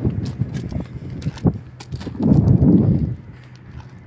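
Footsteps crunching on gravel, with a gust of wind buffeting the phone microphone a little after two seconds in, over a steady low hum.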